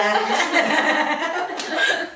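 Young women laughing together, with bits of speech mixed in.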